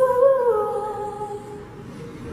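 A solo voice holding one long sung note into a microphone, without accompaniment. The pitch dips slightly about half a second in and the note fades away over the next second.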